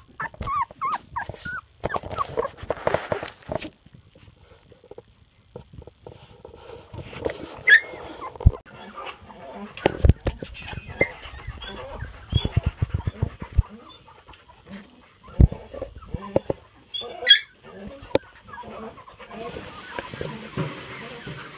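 Litter of two-and-a-half-week-old puppies whimpering and squealing, first in a quick run of short rising-and-falling squeals, then in scattered single cries, as they call for their mother. Scattered knocks and rustling come from the pups scrambling about the bedding.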